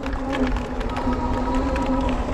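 Yadea Trooper 01's 750-watt hub motor whining at a steady pitch under power while riding, over a low wind rumble on the microphone and light clicks and rattles.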